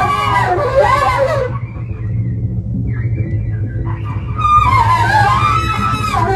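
Live jazz quartet in phone-recorded audio: a trumpet plays bending, wavering lines over a steady low rumble of bass and mallets on drums. The horn drops out for about three seconds in the middle, leaving the bass and drums, then comes back in.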